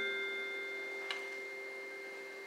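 Bell-like tones from a concert band's mallet percussion left ringing after the final chord, slowly fading away, with a small click about a second in.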